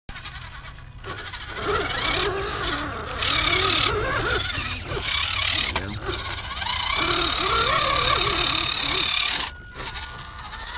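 Electric motor and gearbox of a WPL RC truck whining under throttle. The pitch wavers up and down, and the whine surges and cuts out briefly several times as the throttle is worked.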